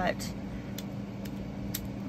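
A steady low background hum with a few faint, scattered clicks.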